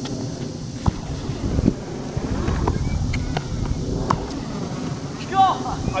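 Wind rumbling on the microphone, steady throughout, with a few short sharp knocks scattered through it.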